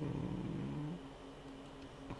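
A man's quiet, low, drawn-out hesitation sound lasting about a second, then a faint steady hum.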